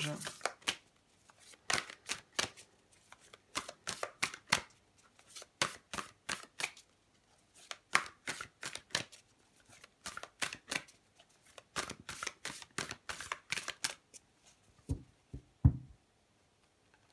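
A tarot deck shuffled by hand, the cards slapping and riffling together in short flurries of clicks every second or so. Near the end come two dull knocks as the deck is squared on the cloth-covered table, the second being the loudest sound.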